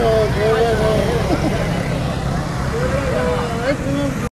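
Raised voices of several people, high-pitched and strained, over a steady low rumble of street noise.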